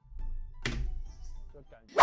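A low rumble, then a sudden thud with a rush of noise about two-thirds of a second in, fading over the next half second.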